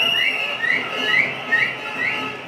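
Whistling: a string of short, rising whistled notes, about two a second.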